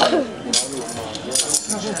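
Low, unclear chatter among the musicians on stage, broken by a few sharp clinks and knocks: one right at the start, one about half a second in and a cluster around a second and a half in.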